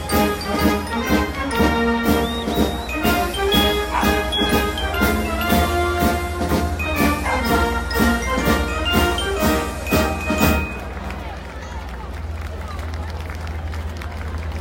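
Band music playing a march-like tune with a steady drum beat and bright bell-like high notes, which breaks off abruptly about ten and a half seconds in. After that comes only the steady background noise of an outdoor crowd.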